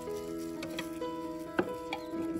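Background music with a few short wet knocks and taps from brined radishes being handled in a plastic tub; the loudest, sharpest knock comes about one and a half seconds in.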